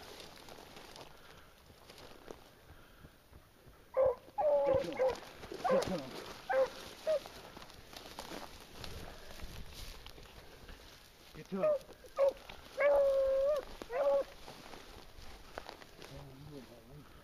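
Beagle baying in two spells of short, bending cries, the first about four seconds in and the second near the end with one longer held note.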